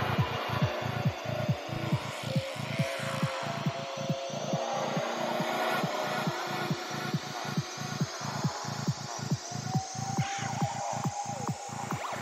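Psychedelic trance dance music from a DJ set: a fast, evenly pulsing bass line, about four pulses a second, under a long rising synth sweep.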